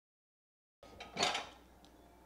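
Total silence for most of the first second, then ceramic dishes clinking and clattering briefly in a dishwasher rack as they are handled, loudest a little over a second in.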